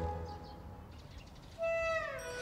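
Background drama score: a musical phrase fades out into a short lull. About a second and a half in, a single held whistle-like note enters and then slides downward.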